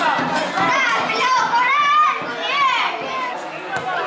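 High-pitched voices shouting and calling, their pitch rising and falling steeply, over a haze of background noise.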